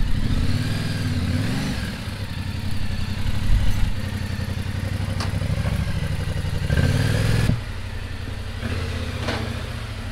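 Yamaha Ténéré 700's parallel-twin engine running at low revs, rising and falling briefly as the motorcycle is eased slowly forward. A couple of short knocks are heard along the way.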